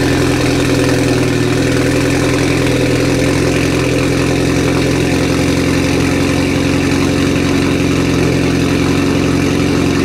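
Mitsubishi Lancer Evolution X's turbocharged 2.0-litre four-cylinder idling steadily, running on its freshly installed fuel surge tank system.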